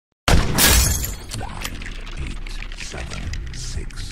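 Film-trailer sound effect of glass shattering: a sudden loud smash about a quarter second in, then a steady scatter of small tinkling and crackling shards over a music bed.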